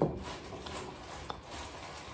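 Quiet chewing of a mouthful of food with the mouth closed, with a small click just over a second in.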